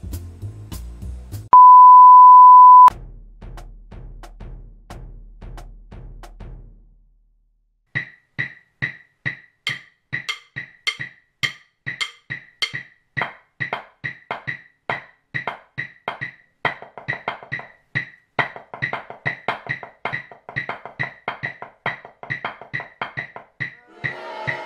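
A loud steady beep lasts just over a second, about two seconds in. From about eight seconds in, drumsticks play a fast, even run of strokes on a drum, as nine-note groupings (ninelets) spread across four beats, and the strokes grow denser in the second half.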